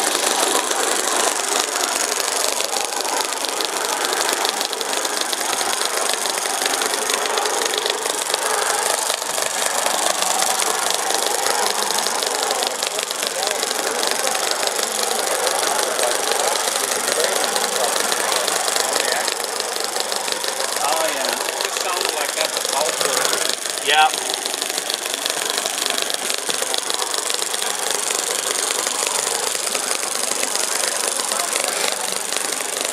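Tiny gasoline model engine (3/8-inch bore, 1/2-inch stroke) running steadily with a fast, fine ticking as it drives a small model locomotive along the track. One short, louder sound about three-quarters of the way through.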